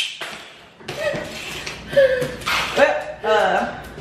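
A wooden spring mouse trap snaps shut once, a sharp click with a short ring, then voices follow.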